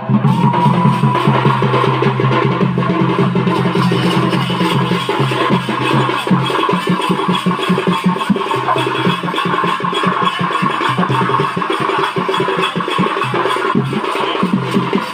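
Folk drumming on a barrel-shaped hand drum (dhol) in a fast, steady rhythm, with a held melodic tone sounding above the beat throughout, accompanying a Danda Nacha dance.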